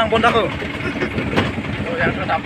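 A vehicle's engine running with steady low rumble and road noise, heard from on board while moving, with a single sharp click about one and a half seconds in.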